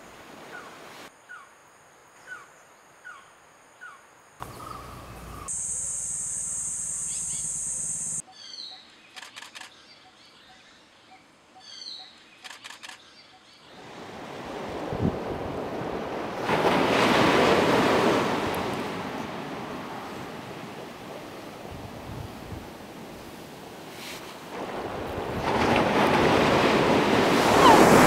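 Sea waves breaking on a rocky shore, the surf surging up and falling back twice through the second half. Before that, quieter forest sounds: short bird chirps about once a second, a steady high buzz for a couple of seconds, then more bird calls.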